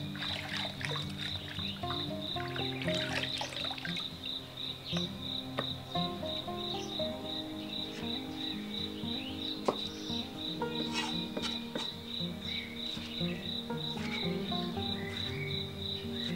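Hands swishing and rubbing cucumbers in a basin of water, then a cleaver knocking through cucumber onto a wooden chopping block in short cuts, one sharp knock near the middle. An insect chirps steadily in the background at about three pulses a second, over soft background music.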